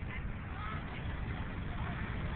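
Wind buffeting the phone microphone in a low rumble, over the steady wash of surf breaking on the beach, with a few faint short calls.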